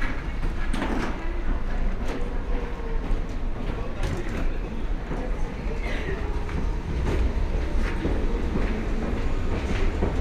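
Hard-shell wheeled suitcase rolling along a jet bridge floor, with footsteps and sharp clicks about once a second, over a steady low rumble.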